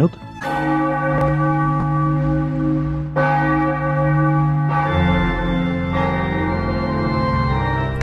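Bell-like held tones in a piece of music, the chord changing every second or two, opening a radio station jingle.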